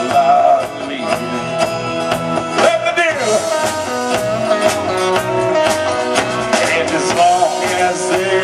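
Live country band playing through a PA: drum kit keeping a steady beat under electric and acoustic guitars and bass, with a bending guitar note about three seconds in.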